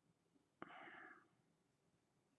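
Near silence, broken by one short, faint whisper from a person about half a second in.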